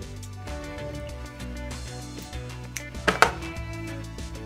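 Background music, with a single sharp snip about three seconds in from line clippers cutting the tag end of braided fishing line.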